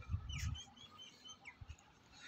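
Faint bird chirping: a run of short, high chirps with a couple of quick falling calls.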